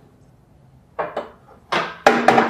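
Metal clunks from a 45° plate-loaded leg press as its weight carriage and latch are worked: two sharp knocks about a second in, then a louder, longer noise building near the end.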